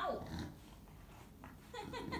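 Chow Chow vocalizing: a short whine that slides down in pitch right at the start, followed by softer sounds. The owner takes it as the dog being angry at having been left.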